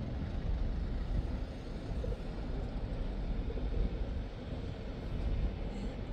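Low, uneven outdoor rumble, with the marine VHF radio silent between transmissions.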